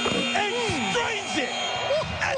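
Arena end-of-period horn sounding the end of the half: one steady electronic tone that cuts off near the end, with excited voices over it.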